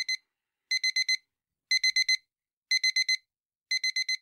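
Digital alarm clock beeping in quick groups of four short, high beeps, repeating about once a second.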